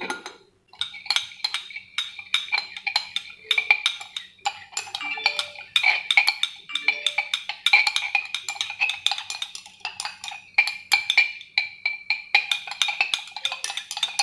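Glass stirring rod clinking rapidly and continuously against the inside of a glass beaker as a solution is stirred, each tap ringing briefly. The tapping starts a little under a second in.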